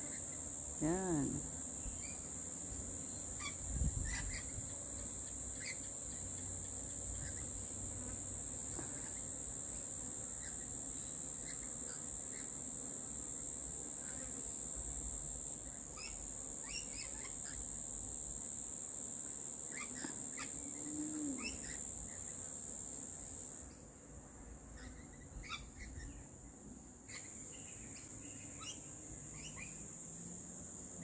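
Insects droning in a steady high-pitched chorus, with short bird chirps scattered over it. The drone breaks off briefly about halfway through and drops away for the last quarter, and a soft thump comes about four seconds in.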